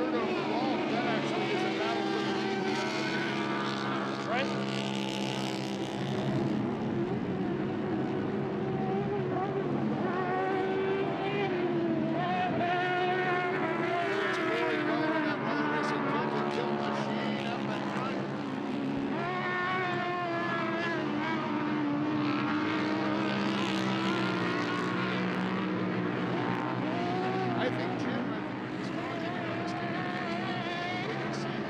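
Racing UTV engines running hard and revving up and down, their pitch rising and falling with the throttle.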